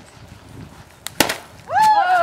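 A stick hitting a hanging piñata: a light tap, then one sharp, loud whack about a second in that knocks the piñata down. A voice calls out just after.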